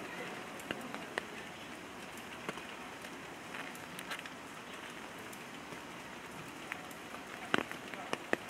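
Steady rain falling, an even hiss with scattered drops ticking, and a sharper tap near the end.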